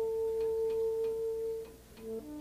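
A single long held note, almost pure in tone, from a melody instrument in a live jazz quintet performance. It fades out about a second and a half in, with a few faint ticks behind it.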